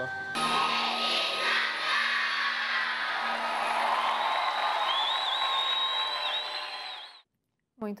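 A large theatre audience applauding and cheering after a children's choir performance, with a high, wavering whistle over the applause in the second half. The sound cuts off abruptly about a second before studio speech begins.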